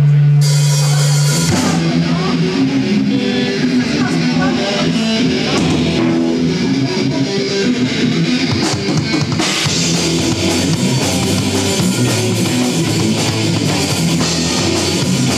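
Live rock band playing: drum kit and electric guitars, with a saxophone in the line-up. It opens on a held low note, and the full band with drums comes in about a second and a half in.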